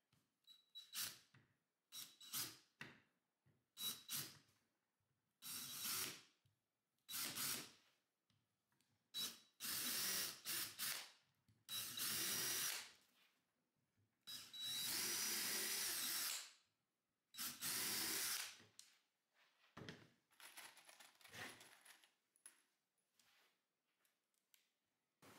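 Cordless drill boring angled pilot holes into pine 2x3 table legs for hidden screws: a few short starts, then a series of longer runs of one to two seconds each with pauses between. Faint clicks and handling follow near the end.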